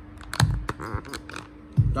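Handling noise as the phone camera is moved in close: a few sharp clicks, then a low thump near the end, over a faint steady hum.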